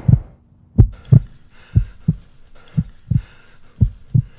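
Heartbeat sound effect: paired low thumps (lub-dub) repeating about once a second, over a faint steady hum.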